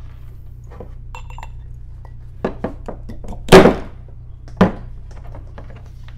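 Handling knocks of metal brushless motors bumped and set against a wooden desktop: a few light knocks, then a loud thunk about three and a half seconds in and another about a second later.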